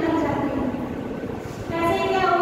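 A woman speaking in Hindi, with a short pause past the middle before her voice resumes near the end, over steady low background noise.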